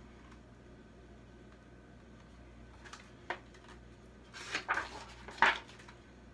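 Soft handling noises from a picture book being held up, turned back and its pages handled: a light click about three seconds in, then a few brief paper rustles near the end, the last the loudest, over a low steady room hum.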